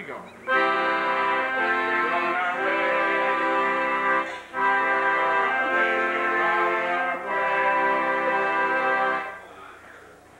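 Two long held musical chords, organ-like in tone, from an accordion-type keyboard instrument. They start about half a second in, break briefly just after four seconds, and stop just past nine seconds.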